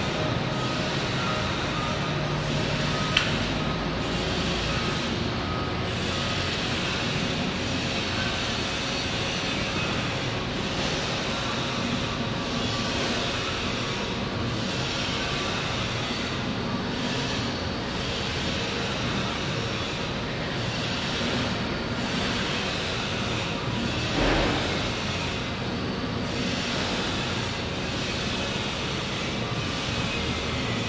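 Wulftec WSML-150-B semi-automatic stretch wrapper running a wrap cycle: the turntable drive and powered pre-stretch film carriage make a steady mechanical running noise as film is pulled onto the turning pallet. There is a sharp click about three seconds in and a brief louder surge a few seconds before the end.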